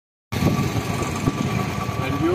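Motorcycle engine idling with a steady low rumble.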